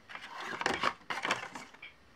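Hands handling a rubber stamp and small round magnets on a MISTI stamping tool's magnetic base: a quick series of light clicks, taps and rustles.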